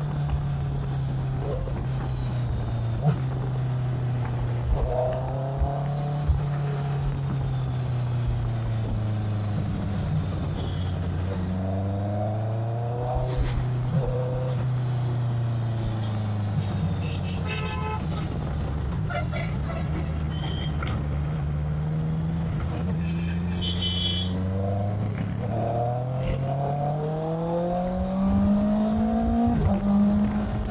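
Sport motorcycle engine running at riding speed, its note falling and rising with the throttle and gear changes and climbing near the end, with wind noise on the microphone. Vehicle horns honk in short bursts a little past the middle.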